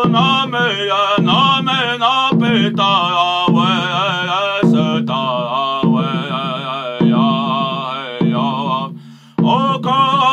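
A man singing a chant-style song with a wavering voice, keeping a slow, steady drum beat of about one stroke a second on a large cylinder drum. The singing breaks off briefly near the end, then carries on.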